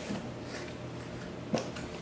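Faint handling of a cardboard box as its lid is opened, with one short click about one and a half seconds in.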